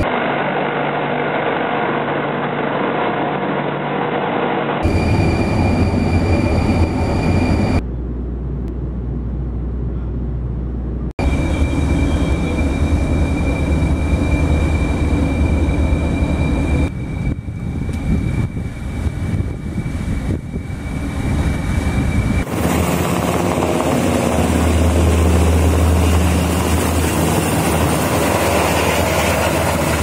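Steady, loud machinery and wind noise at sea in several blocks that change abruptly: a military hovercraft running at the start, then engine and wind noise from ships at sea, and a naval helicopter's rotor and turbine in the last several seconds.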